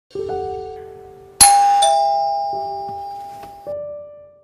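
Electronic doorbell chime playing a short run of ringing notes, the loudest a high then a lower 'ding-dong' about a second and a half in, each note dying away slowly.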